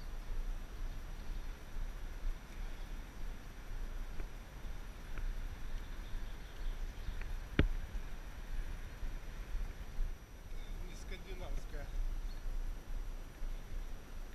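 Low rumble of wind and movement noise on the microphone of a camera carried along at a brisk walking pace, with one sharp click about halfway through.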